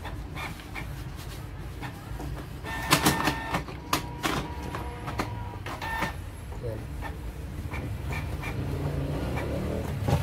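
Canon MP237 inkjet printer printing, its motors running steadily, with a run of clicks and a brief steady whine between about three and six seconds in. It is printing on after its ink-out error was overridden with the Stop/Reset button.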